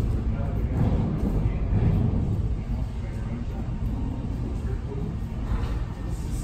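Sawmill machinery running: a steady low rumble from the conveyor line and feed rollers as a sawn board is carried along.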